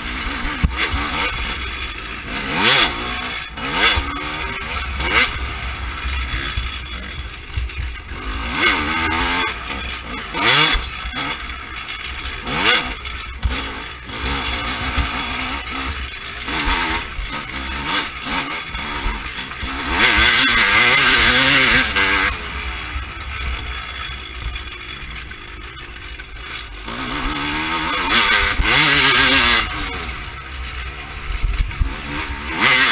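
Dirt bike engine revving hard and dropping back again and again, each pull a rising sweep in pitch as the rider accelerates between turns on a trail. It stays wide open for about two seconds some twenty seconds in and again near the end.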